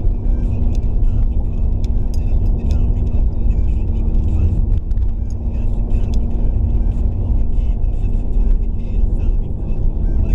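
Car driving, heard from inside the cabin: a steady low engine-and-road rumble with a constant hum, and scattered light ticks throughout.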